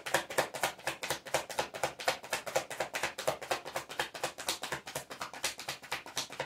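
A tarot deck being shuffled by hand, the cards slapping together in a quick, steady patter of about seven clicks a second.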